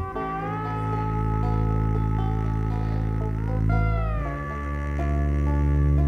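Instrumental passage of a live acoustic string band: upright bass holding long low notes under a slide guitar gliding between pitches, with a marked downward slide about four seconds in.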